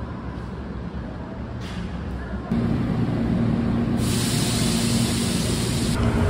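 Subway and street vehicle noise: a low rumble, then a steady low hum from about two and a half seconds in, joined about four seconds in by a loud hiss of released air.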